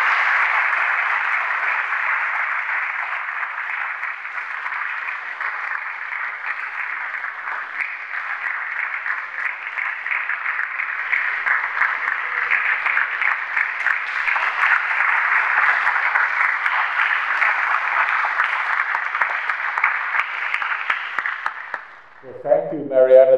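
Audience applauding: a long, dense round of clapping that holds steady and dies away near the end.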